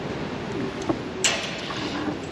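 A small click, then a short scrape as the bolt and fittings on the elevator bell crank are handled, over a steady background hiss.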